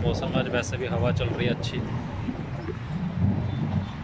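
Indistinct speech in the first couple of seconds, over a low rumble of wind buffeting the microphone; after that the wind rumble goes on alone.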